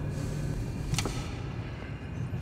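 Low, steady rumble of a car's cabin while driving, with a single sharp click about a second in.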